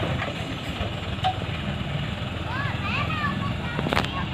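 Diesel engine of a Chiến Thắng cargo truck running steadily under load as it climbs a dirt slope carrying a heavy load of acacia logs. There is one sharp click near the end.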